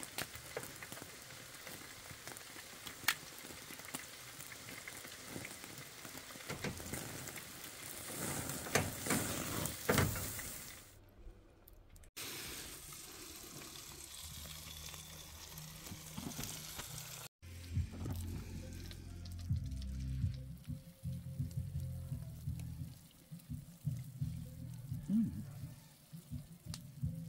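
A thick steak searing on a grill grate over an open wood fire: a steady sizzle with sharp crackles and pops. It cuts off suddenly about eleven seconds in.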